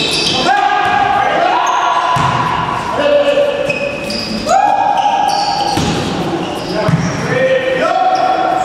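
Sneakers squeaking on the sports hall floor during a volleyball rally: a run of overlapping squeals at different pitches, each starting sharply, with players' voices calling out beneath.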